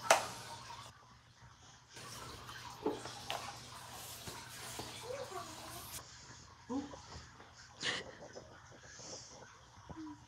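Wet string mop swishing and scrubbing across a tiled floor, with a sharp knock at the start and a few softer knocks, and a brief high whine from a dog partway through.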